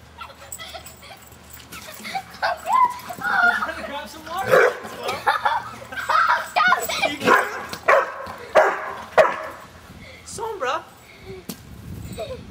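A dog barking repeatedly, a run of short, sharp barks in the middle stretch.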